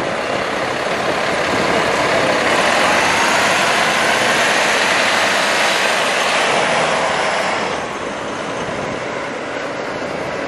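Street traffic noise dominated by a double-decker bus running close by, a steady rushing engine-and-road sound. It swells for several seconds while the bus is just ahead, then eases a little near the end as the bus is passed.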